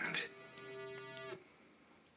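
A TV network's logo jingle playing through a television's speaker: a held musical tone that cuts off abruptly just over a second in, leaving faint room tone.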